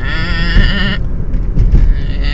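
A sheep-like bleat in a human voice, wavering in pitch and lasting about a second, over the low rumble of a moving car's cabin.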